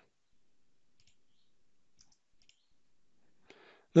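Near silence with a few faint clicks, and a short breath near the end.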